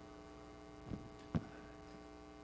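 Steady electrical mains hum, with two short soft thumps about a second in, half a second apart.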